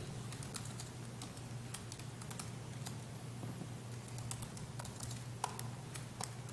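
Computer keyboard being typed on: a run of irregular keystrokes, over a steady low hum.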